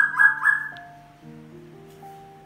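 Three quick electronic beeps at one pitch from a ku-ru-mi rice cooker. The beeps run together and fade out within about a second, over soft background music.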